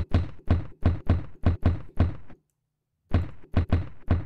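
A kick drum sample made from a recorded guitar case slam, bit-crushed and saturated in Native Instruments Battery. It is triggered in a quick even pattern of about four deep hits a second, stops for under a second about two and a half seconds in, then starts again, while its low-pass filter cutoff is swept.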